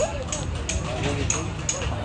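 Voices of people talking in the background, with a faint high-pitched tick repeating about three times a second.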